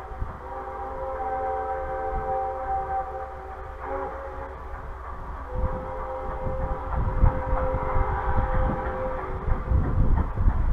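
The chime steam whistle of Grand Canyon Railway 4960, a 2-8-2 steam locomotive, blowing from a distance as it nears the crossing: the end of one long blast, a short one, then a final long blast, the pattern of a grade-crossing whistle signal. A low rumble from the approaching train and wind builds from about halfway.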